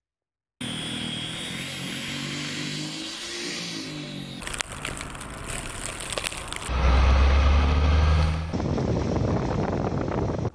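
Vehicle engines and wind in a snowstorm, cut together: an engine running with a steady hum, then a couple of seconds of wind blowing, then a louder, deep engine rumble for about two seconds near the end.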